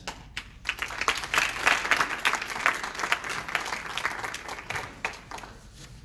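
Audience applauding: the clapping builds up within the first second, stays full for a couple of seconds, then thins out and fades before the end.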